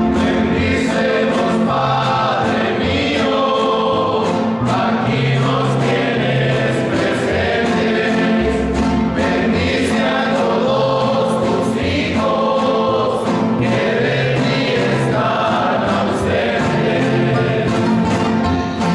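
Men singing a religious song together, accompanied by several nylon-string classical guitars playing chords and bass notes.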